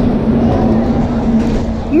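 Wind buffeting a body-worn camera's microphone, a loud steady rumble over a constant low hum, with faint voices under it.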